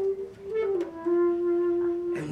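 Bass clarinet playing a sustained note that slides down a step a little under a second in and then holds the lower note steadily.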